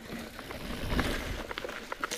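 Mountain bike rolling fast down a dry dirt trail: tyre noise on dirt and loose rock with small rattling clicks from the bike, and a low rumble swelling about a second in.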